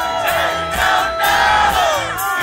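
Live rock band playing loudly, with crowd voices singing and shouting along; a long vocal line slides down in pitch about a second in.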